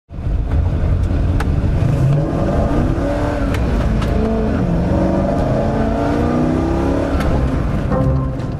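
A Corvette's V8 engine pulling hard under acceleration, its pitch climbing and falling repeatedly as the car drives, over a heavy low rumble and road noise.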